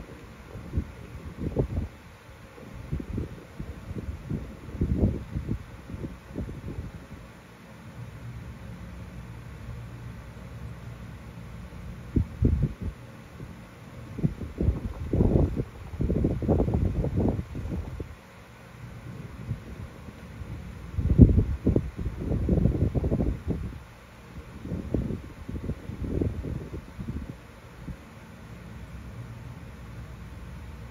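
Wind buffeting the microphone: low rumbling gusts that come and go irregularly over a steady low background, strongest in the middle and again about two-thirds of the way through.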